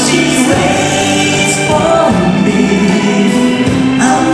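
Live band playing a slow song, with electric bass and held sung notes.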